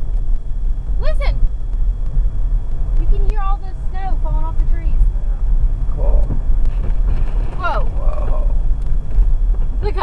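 Steady low rumble of a car being driven, heard from inside the cabin. A few short voice sounds come over it.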